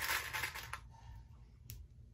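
Soft rustling of stretch knit fabric being handled and smoothed into place, fading out within the first second, then a single light click near the end.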